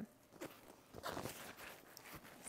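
Zipper on the side compartment of a No Reception Club fabric diaper backpack being pulled open, a faint scratchy run starting about a second in.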